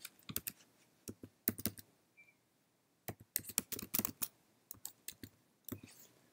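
Typing on a computer keyboard: quick, irregular runs of key clicks, with a pause of about a second near the middle.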